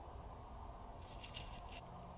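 Quiet room tone: a low, steady background hum, with a few faint light ticks in the second half.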